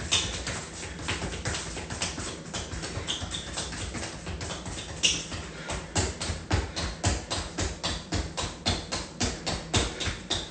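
A soccer ball tapped quickly between alternating feet, with shoe scuffs on a concrete floor: a steady run of short taps, about four a second.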